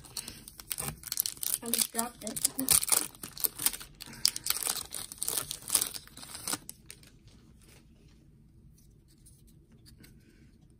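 Foil wrapper of a Topps baseball card pack being crinkled and torn open by hand: a dense flurry of crackles and rips over the first six or so seconds, which then stops.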